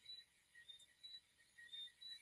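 Near silence: a pause between speakers, with only faint hiss and a few very faint short high blips.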